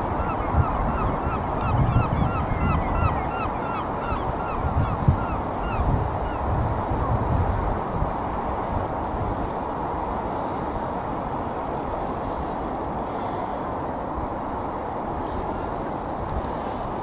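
A flock of birds calling: a quick run of short, repeated calls that thins out and stops about seven seconds in, over steady wind noise and gusts on the microphone.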